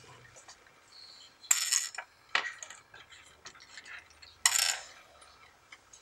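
A small hand-spun top clattering against a grainy tabletop in short bursts: about a second and a half in, a brief click near two and a half seconds, and again about four and a half seconds in.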